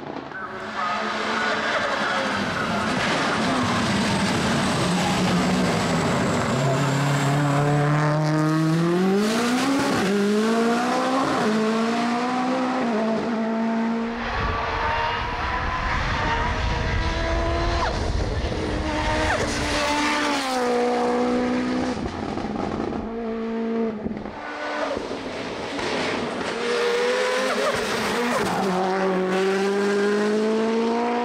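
Mitsubishi Lancer Evo IX race car's turbocharged four-cylinder engine accelerating hard. Its pitch climbs through each gear and drops sharply at each upshift, several times over, with a deeper rumbling stretch in the middle.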